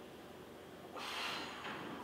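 A person's sharp, noisy breath, heard once about a second in and lasting about half a second, from the effort of an ab exercise.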